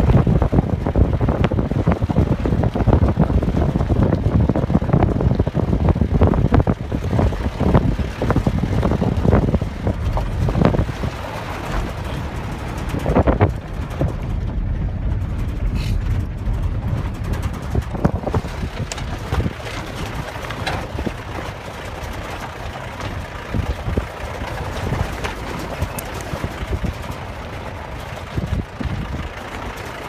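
A low rumbling noise with no clear tone, gusty and louder for the first dozen seconds, then lower and steadier.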